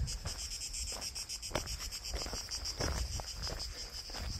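Insects chirring steadily, a high, fast-pulsing buzz, with a low rumble of wind on the microphone.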